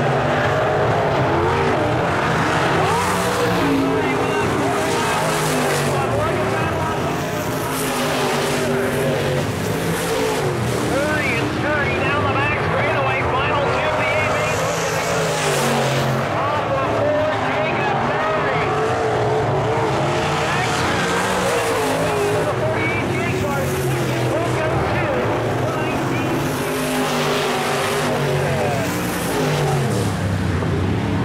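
Several dirt-track modified race cars' engines running hard together, their pitches rising and falling continuously as the cars go around the oval.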